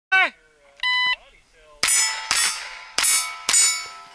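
Shot timer beep, then four pistol shots about half a second apart, each followed by the ring of a hit steel target plate fading away.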